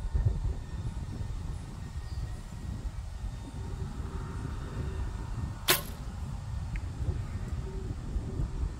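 Barebow recurve shot: a single sharp snap of the string and limbs on release about five and a half seconds in, with a faint short tick about a second later. Wind rumbles on the microphone throughout.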